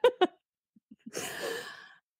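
A laugh trailing off in two short bursts, then a long breathy sigh of about a second starting midway.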